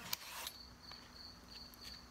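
A Y-shaped vegetable peeler scraping a ribbon off a raw carrot, a short faint stroke in the first half second, followed by a few soft clicks of handling. A thin, steady high-pitched tone hums faintly underneath.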